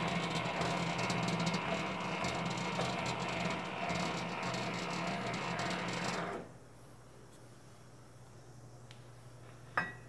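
The bowl-lift handwheel of a Hobart H600 mixer being turned to lower the bowl, its lift gearing giving a steady mechanical grinding. This stops suddenly about six seconds in, leaving a faint low hum.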